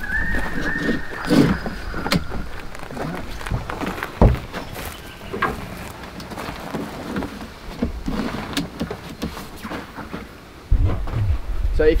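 Rooftop tent being set up: scattered knocks and clicks from the tent's folding sections and the aluminium tray and steps as someone handles the tent and climbs up. A short squeak near the start slides down slightly in pitch, with a sharp knock about four seconds in.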